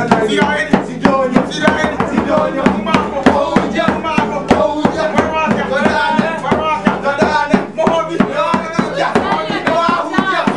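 Hand-held drum with a skin head beaten in a quick steady rhythm, about four beats a second, with voices singing along.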